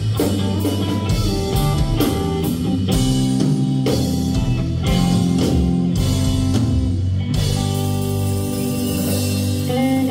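Live blues-funk band playing an instrumental passage: electric guitar over drum kit and bass guitar. Regular drum strokes give way about seven seconds in to a cymbal wash under held guitar notes.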